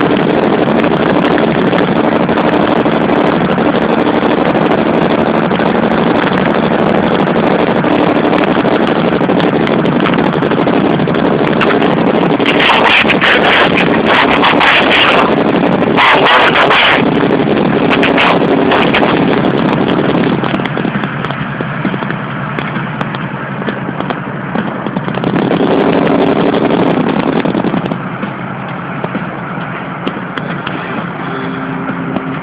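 Engine drone and road noise inside a car's cabin at highway speed. There are two loud rushing bursts of noise, about twelve and sixteen seconds in. The level drops after about twenty seconds.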